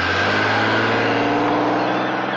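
Tata Safari SUV engine running as it drives off and pulls away, its note rising slightly, over a steady haze of road noise.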